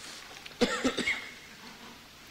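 A person coughing, a quick run of about three coughs about half a second in.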